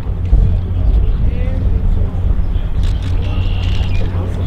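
Wind buffeting the camera microphone, a ragged low rumble, with faint distant voices and a faint steady high tone near the end.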